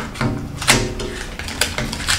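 Plastic and card packaging of a small stationery item handled and peeled open by hand: a series of sharp clicks and crackles, the loudest a little under a second in.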